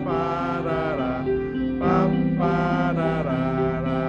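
Live band music in a slow passage between sung lines. A wavering melody line runs over steady held chords from keyboard and guitar, and the chord changes about two seconds in.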